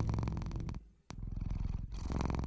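A domestic cat purring in a steady rapid pulse, cutting out for a moment about a second in and then carrying on.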